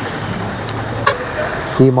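Steady noise of road traffic from a busy street, with a faint click about a second in; a man's voice starts just before the end.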